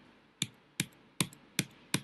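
Five sharp clicks, evenly spaced about 0.4 s apart, from computer input while a document is scrolled down the screen.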